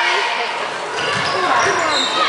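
Basketball being dribbled on a hardwood gym floor, a few low bounces in the second half, under spectators' chatter.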